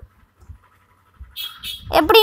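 Quiet, then about a second and a half in a brief scratch of a graphite pencil on sketchbook paper. A child's high voice starts speaking again at the very end.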